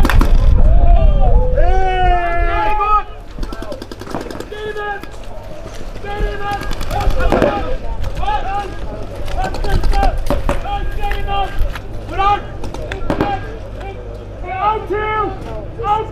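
Paintball markers firing rapid strings of shots, mixed with players' shouting voices. It is loudest in the first three seconds, where a heavy low rumble sits under the voices.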